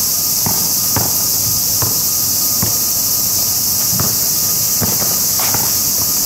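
Loud, steady, high-pitched drone of summer insects in the park trees, with a basketball bouncing on the asphalt court: about six irregular thumps as the ball is dribbled and played.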